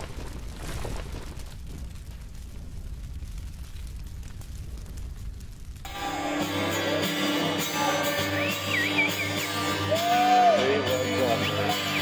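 Intro sound effect: a low rumble trailing off a crash, then about six seconds in, music comes in with steady held tones and a few gliding notes.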